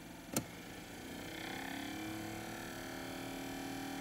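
A click from the range switch of a Heathkit MI-2901 fish spotter, then the unit's internal display motor speeding up as it is switched back to the 60 range. Its hum rises in pitch over a second or two and then settles into a steady tone.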